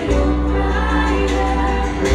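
Live pop band playing, with several women singing together over guitars and a held bass line that changes note near the end.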